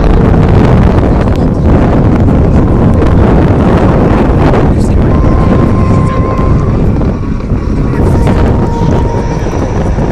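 Loud, steady jet engine noise from an aircraft passing over an airfield, mixed with wind buffeting the phone's microphone.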